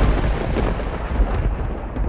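A deep rumble fading away after a heavy hit, its higher hiss thinning out first as it dies down.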